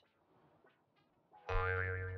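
Silence for about a second and a half, then a short cartoon-style transition sound effect starts suddenly: a held musical tone with a low hum under it, slowly fading.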